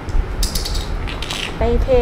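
Brief scratchy scraping and creaking from small wooden props being handled by hand, lasting about a second from just under half a second in.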